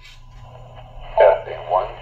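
A Retevis handheld two-way radio's speaker plays back a test voice counting ('one') over a steady hum and hiss, with the thin, tinny sound of narrowband FM. This is the AllStar node's parrot echoing back the test transmission.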